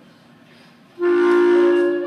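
High school choir entering on a sustained chord about a second in, after a brief hush. Several voices hold steady pitches together.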